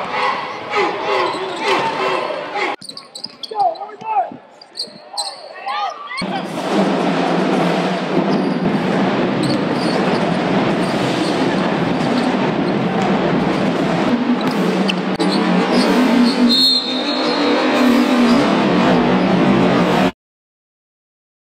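Basketball bouncing on a hardwood court amid voices during a scrimmage. About six seconds in, a dense, steady din of the crowd filling the arena takes over.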